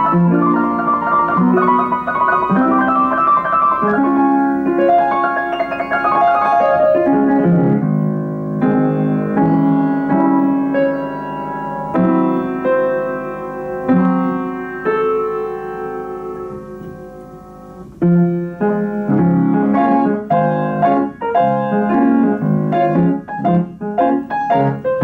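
Wm. Knabe & Co. upright player piano playing itself from a 1927 Ampico reproducing roll, a 1920s popular-song arrangement in full chords and melody. The playing eases into a softer passage that fades down, then comes back loud and busy about eighteen seconds in.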